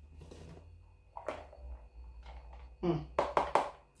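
Small plastic food containers being handled as chopped okra is tipped and tapped out of one into the other: a light click a little over a second in, then a quick run of about three short knocks near the end.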